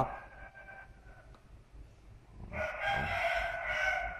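A rooster crowing once: a single long call of about a second and a half, starting past the middle.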